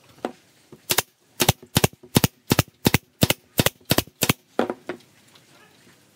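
A nail gun firing about a dozen times in quick succession, roughly three shots a second, driving nails through pine strips into a board panel, followed by a couple of softer knocks.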